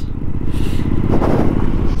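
Motorcycle running along a loose gravel dirt road, carrying two riders: a steady low engine and road rumble, with a short swell of noise about a second in.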